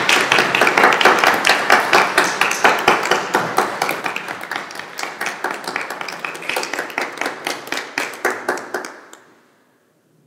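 Audience applause, dense at first and thinning to scattered claps, dying away about nine seconds in.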